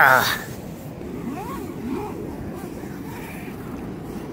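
A tent-door zipper pulled shut in one quick run at the very start, its pitch falling, over the steady rush of a river. Faint voices follow.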